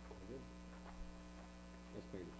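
Steady electrical mains hum under quiet room tone, with a brief faint murmur of a voice just after the start.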